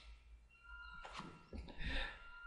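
Faint breathy vocal sounds from a man, soft and brief, mostly in the second half, over a faint steady high-pitched hum.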